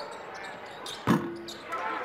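A basketball bouncing once on a hardwood court about a second in: a sharp thud with a short, low ringing tone. Faint voices follow near the end.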